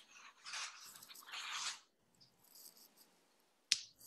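Faint rustling noises in the first two seconds, then a single sharp click near the end, the loudest sound.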